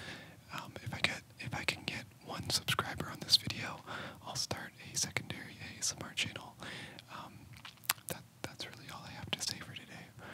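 A man whispering continuously, his words broken by small sharp clicks.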